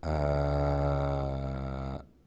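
A man's voice holding one long, low, steady 'aah' for about two seconds. It fades slightly before it stops.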